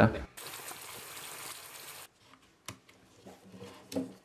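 Water running from a tap into a bathtub as it is being filled, a steady hiss for just under two seconds that cuts off abruptly. A few faint clicks of handling follow.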